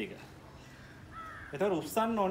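A single short bird call about a second in, pitched well above the man's voice, followed by a man starting to speak near the end.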